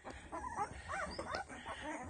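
Ten-day-old Doberman puppies giving several short, high squeaks and whimpers in quick succession.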